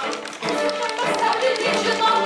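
Live chamber music from a small string ensemble of violins and cello, with sharp short taps recurring through it.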